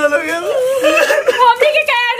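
Staged, mock crying by a woman: a high, wavering whimpering wail, drawn out over the repeated words 'chhod diya', with a second, lower voice overlapping.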